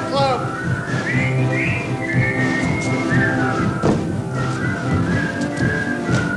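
Live band music from a stage musical: a high melody of held notes that slide in pitch, over a steady low accompaniment.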